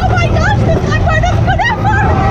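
Roller coaster riders screaming and shrieking, several short rising-and-falling cries, over the loud steady low rumble of the moving mine-train coaster.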